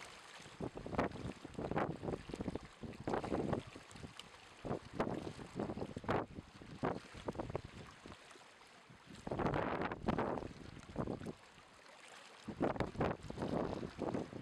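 Small waves washing and splashing over shoreline rocks in irregular surges, the biggest a little before halfway, with wind buffeting the microphone.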